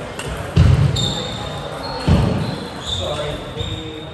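Table tennis rally ending: a plastic ball knocking off the bats and the table, with two heavier thumps about half a second and two seconds in. Thin high squeaks run through the middle, over the murmur of voices in the hall.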